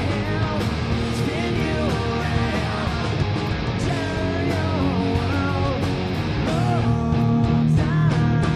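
Live rock band playing loud: electric guitars over bass and drums, with a melodic line bending up and down in pitch, getting a little louder near the end.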